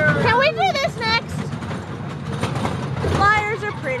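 Amusement park ride train running: a steady low rumble with a light rattle from the moving cars, under high-pitched voices in the first second and again near the end.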